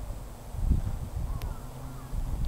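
Low, uneven rumble of wind buffeting a clip-on microphone, with a faint click about one and a half seconds in.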